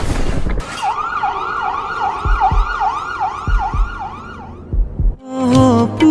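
A siren-like wailing effect in a song's intro, rising and falling about three times a second over low drum thuds, after a fading whoosh. It stops shortly before a melody comes in near the end.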